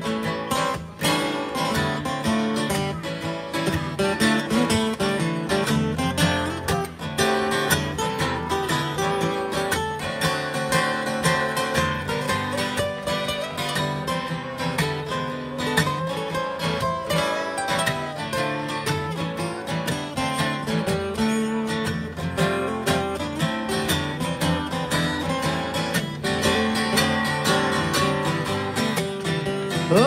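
Two acoustic guitars playing together: a strummed blues instrumental introduction, with no voice.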